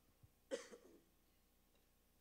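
Near silence, broken by a single short cough about half a second in.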